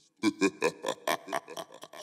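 A man laughing, a quick run of short guttural pulses that fade toward the end.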